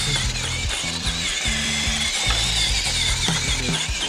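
Losi Night Crawler 2.0 RC rock crawler's electric motor and geared drivetrain whining and ratcheting in repeated throttle bursts as the truck, lying on its side, spins its wheels trying to right itself.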